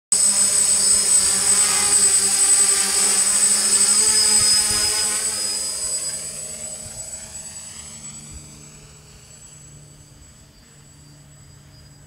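DJI F450 quadcopter's four motors and propellers buzzing, loud and close at first. From about five seconds in the sound fades steadily as the drone flies away.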